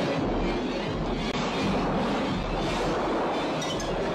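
Steady, loud rushing of churning water and bubbles underwater, a film sound effect of a scuba diver being thrashed about.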